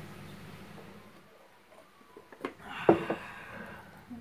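A ceramic coffee mug and a thermos jug being handled on a table: a small click, then a sharp clink of the mug being set down about three seconds in, followed by a brief hiss.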